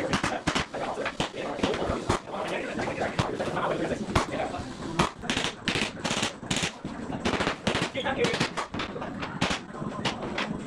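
A rapid, irregular run of sharp knocks: a Bostitch pneumatic flooring nailer struck with its mallet, driving fasteners through engineered hardwood planks into the subfloor.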